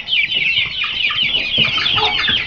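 A pen of half-grown Aseel and Shamo gamefowl chicks peeping and chirping all at once: a dense chorus of short, high, overlapping calls with no break.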